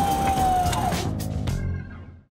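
Electronic music sting over a heavy low rumble. A held tone slides slightly downward over the first second, then come a couple of sharp hits before it fades out near the end.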